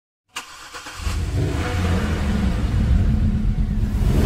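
Car engine revving sound effect: a sharp click near the start, then a low engine rumble that swells over about a second and runs on steadily.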